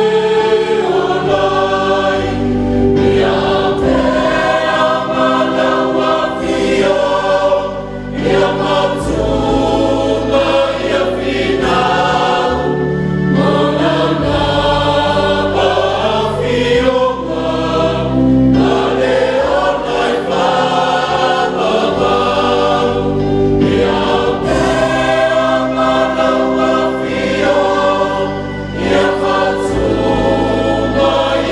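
Mixed church choir of men and women singing a Samoan hymn in harmony, in long held phrases with brief breaks between lines.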